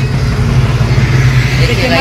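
Diesel engine of a Wirtgen W 2000 road milling machine running steadily, a loud low hum with a hiss over it.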